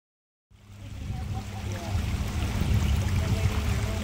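Fading in from silence about half a second in: a boat's outboard motor running steadily at low speed, with water washing along the hull.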